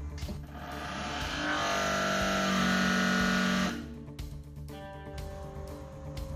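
Elfra busbar machine's hydraulic drive running under load for about three seconds as it presses an offset into an 80 mm copper busbar. It builds up and then stops suddenly. Background music plays throughout.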